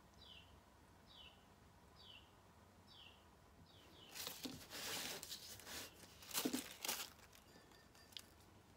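A small bird calling a short descending chirp five times, about one every 0.8 s. Then a few seconds of louder rustling with a couple of soft knocks as the clay mug and its work surface are handled.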